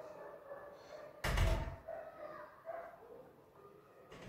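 A single loud, deep thump a little over a second in, with only faint background noise around it.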